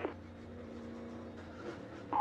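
Faint, steady low drone of a NASCAR Cup car's V8 engine at speed, heard from the in-car camera, holding one pitch.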